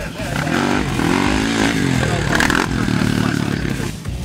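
Off-road motorcycle engine revving hard as the bike rides past close by, its pitch rising and falling several times with the throttle and gear changes.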